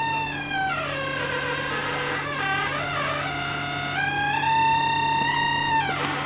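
A theremin-like musical tone slides down over the first second and a half, wobbles, then climbs back up about four seconds in and holds before stopping near the end. Under it, the backhoe's engine runs steadily.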